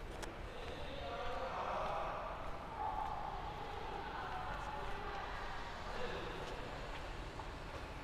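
Faint ambience of a large hall, with distant indistinct voices.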